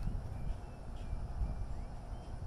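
Outdoor ambience: a low rumble of wind on the microphone, with a few faint, short, high chirps from distant birds.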